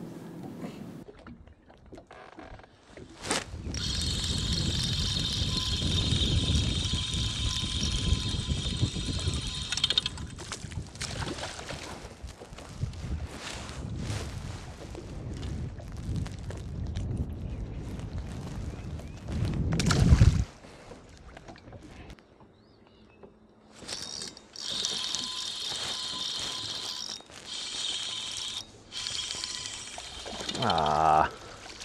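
A boat's electric trolling motor whines steadily, starting and stopping twice, over low wind and water noise. About two-thirds of the way in there is a brief loud, low rumble.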